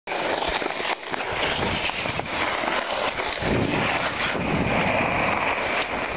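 Skis sliding and scraping over snow: a continuous rough rushing noise full of small scrapes, with no break.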